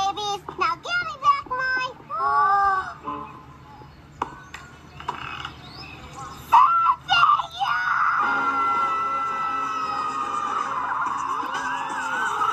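Animated film soundtrack playing from a laptop's speaker: a cartoon child character's high-pitched cries and shrieks with music, then a long held tone from about eight seconds in.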